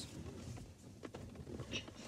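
Faint clicks as the push-to-open cupholder in a Lexus's rear centre armrest is pressed and released and slides out, quiet against the low hum of the car cabin.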